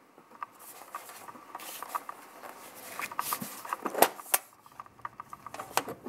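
Hands handling a metal tin box: light irregular tapping, rubbing and clicking of fingers on its lid, with two sharper knocks about four seconds in and another near the end.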